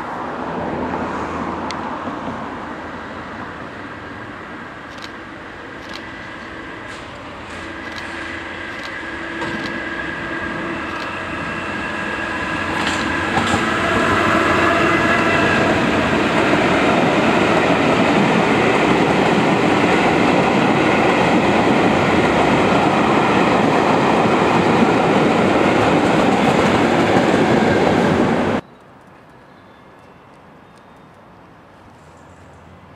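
A passenger train hauled by a pair of Class 73 electro-diesel locomotives approaches and passes close by. It builds from a distant hum with scattered clicks into the loud, steady rush and clatter of the coaches' wheels on the rails, which cuts off suddenly near the end.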